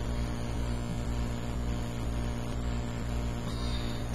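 Steady low electrical mains hum with faint hiss, an even background with no distinct events.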